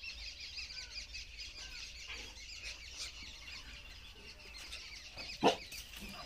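A dense chorus of many small birds chirping without a break. About five and a half seconds in comes a single sharp, loud sound.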